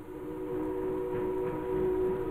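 A ship's whistle sounding one long, steady chord of several tones, growing a little louder.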